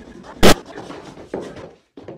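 A single loud, sharp bang about half a second in, followed by fainter scuffling noise.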